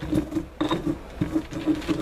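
Dried corn kernels being crushed in a volcanic-stone molcajete as the stone pestle is pushed and turned against the bowl: gritty scraping and crunching in quick repeated strokes, about three a second.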